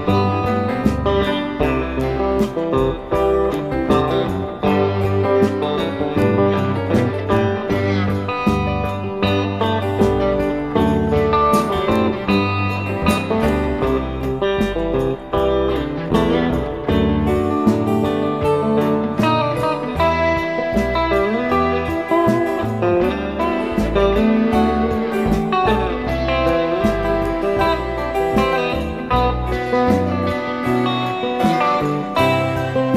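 Live rock band in an instrumental break: lead electric guitar playing a melodic solo line over bass and drums, heard through an audience recording.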